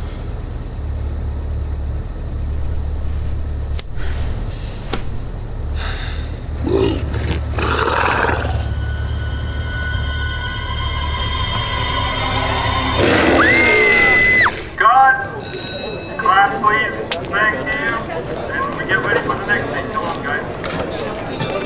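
Film-style sound scene: a low steady rumble under scattered voices, then a loud, high scream held at one pitch for about a second and a half about two-thirds of the way in. The rumble stops with it, and talking follows.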